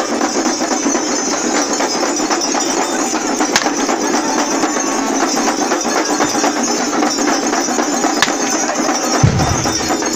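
Music and drumming of a masked New Year mummers' troupe, with many short drum strikes over the noise of a large crowd; two sharp cracks stand out about three and a half and eight seconds in.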